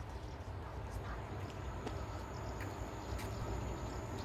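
Outdoor background noise: a steady low rumble with faint distant voices and a few light clicks. A thin, faint, steady high whine comes in about a second in.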